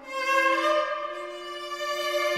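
String quartet playing held bowed notes: a new chord swells in just after the start, led by violin, and is sustained while slowly fading.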